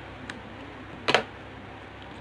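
Light clicks: a faint one early, then a sharper double click about a second in, over a low room background.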